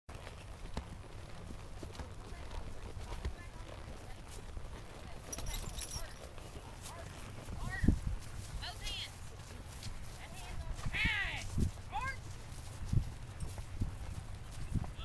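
Horses walking on a dirt trail, hooves clip-clopping, with scattered knocks and a louder thump about eight seconds in. Voices call out intermittently over it in the second half.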